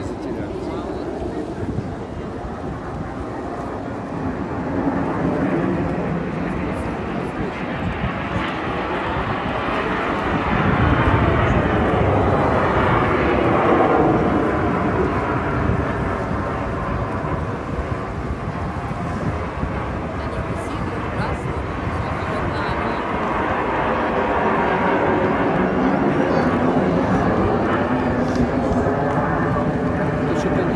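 Jet noise from the Snowbirds' CT-114 Tutor jets flying past: a loud rushing sound whose tone sweeps as the aircraft pass. It swells to a peak about eleven to fourteen seconds in and builds again near the end.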